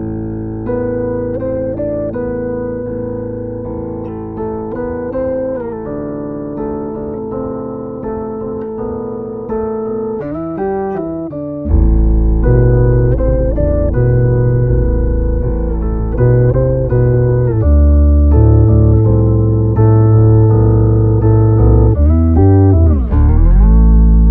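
Electric bass playing chords through a Boss OC-5 octave pedal in Poly mode with the range knob at its 'Lowest' setting, where the pedal tracks only the lowest note of each chord and adds its octave below it. About halfway through, a much heavier low octave comes in under the chords.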